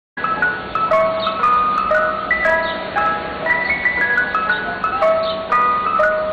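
Ice cream truck chime playing its jingle: a quick melody of short pitched notes that starts abruptly just after the beginning, with a steady low hum beneath.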